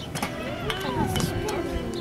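Voices of people talking, with background music and a few sharp knocks that may be the hoofbeats of a horse cantering on sand.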